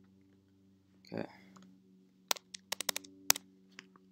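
A quick run of about eight computer keyboard keystrokes a little past halfway, over a faint steady hum.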